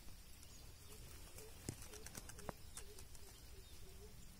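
An animal's faint low call, repeated about three times a second, over a steady low rumble. Two sharp clicks come near the middle.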